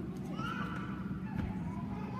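Several people talking at once among a church congregation, with one high voice sliding up and then down about half a second in, and a light knock about a second and a half in.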